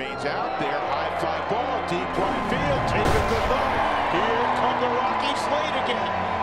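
A baseball bat cracks on the pitch for a home run at the start. A ballpark crowd's noise and a broadcast announcer's call follow for several seconds, over background music.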